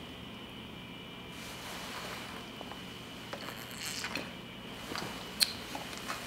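Quiet room tone with a faint steady hum, broken by a few small rustles and ticks of handling in the second half and one sharp click about five and a half seconds in.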